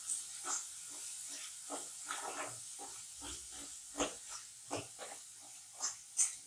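Onion-tomato masala sizzling in a kadhai while a spatula stirs it, with irregular scrapes and knocks of the spatula against the pan about every half second over a steady faint hiss.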